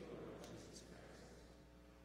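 Faint murmur of a congregation speaking its response together, fading out about a second in, over a low steady hum.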